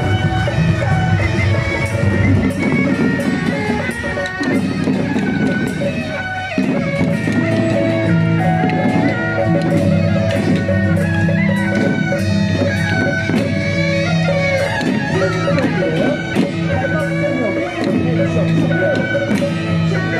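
Chinese procession music: a loud reed-pipe melody of long held notes over drums and sharp cymbal strokes, accompanying dancing giant deity puppets.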